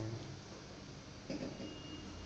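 Faint steady room noise and hiss, broken by two short spoken words: one right at the start and one about a second and a half in.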